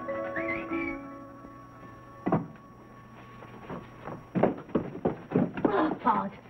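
Soundtrack music with light mallet-percussion notes fades out in the first couple of seconds. A single thunk follows a little after two seconds in, then a run of short knocks and rustles near the end.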